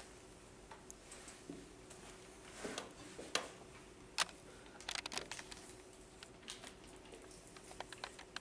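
Scattered light clicks and taps in a quiet room with a faint steady hum, the taps bunching together about three to five seconds in.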